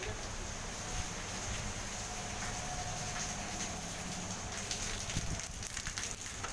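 Steady heavy rain with a Sydney Trains S-set double-deck electric train pulling slowly out past the platform, a faint steady hum from its motors under the rain noise and a few light clicks.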